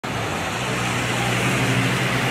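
Steady road-traffic noise on a wet road: an even hiss with a low steady hum underneath.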